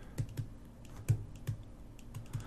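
A few soft, irregular taps of a stylus pen on a tablet screen while handwriting.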